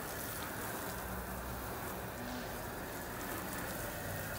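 Garden hose spray nozzle on its shower setting spraying water steadily over a fishing rod and reel: the quick first rinse that just gets the gear wet before it is soaped.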